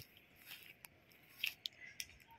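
Faint footsteps crunching on grass and dry fallen leaves: a few brief, scattered crunches and clicks.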